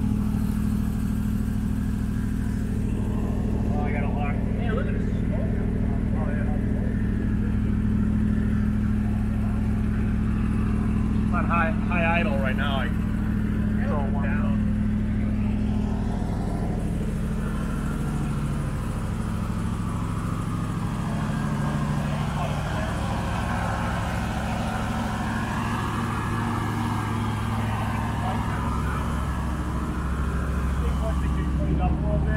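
An old hearse's engine idling steadily, its note shifting a little just over halfway through.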